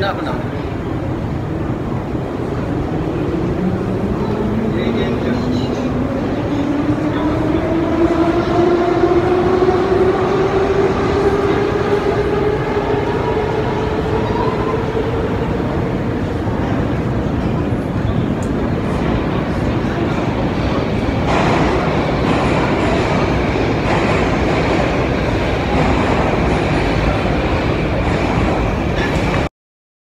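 Metro train accelerating with a rising motor whine over a steady rumble, heard from the station escalator. The whine climbs steadily for about a dozen seconds, then gives way to a broader, brighter rumble, and the sound cuts off just before the end.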